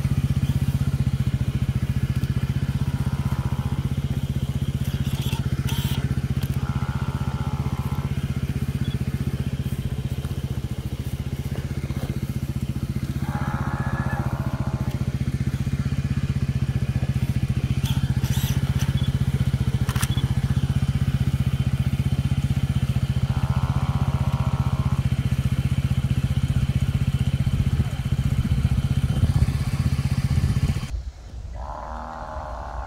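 A loud, steady low hum, like an idling engine, with a few short, fainter mid-pitched sounds and sharp clicks over it.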